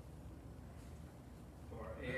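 Quiet room tone with a steady low hum. A man's voice starts again at the very end.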